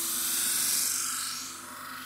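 Kitchen knife blade grinding on the spinning horizontal abrasive disc of an ADEMS Full Drive sharpening machine as it is drawn across during sharpening of the bevel. A hissing grind swells over the first second and fades away well before the end.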